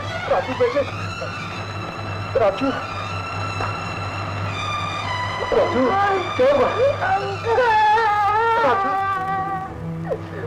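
A siren wailing: it rises in pitch in the first second, holds steady, then wavers on through the rest. Short crying voices, a child among them, sound under it, over a steady low hum on the old soundtrack.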